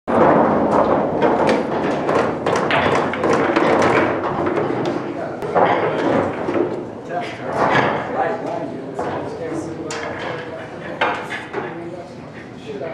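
Many voices chattering in a bar, with frequent sharp clacks and knocks of pool balls. Some come from balls being taken from a coin-operated pool table's ball return and set into the rack.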